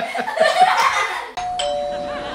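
A two-note ding-dong chime, a higher note and then a lower one, both held and ringing on. It comes in suddenly about a second and a half in, after laughter.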